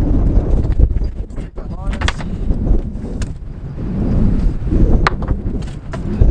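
Strong gusty wind buffeting the microphone, a heavy rumble, with a few sharp clicks and knocks of kite gear being handled in the back of a van and a brief voice sound about two seconds in.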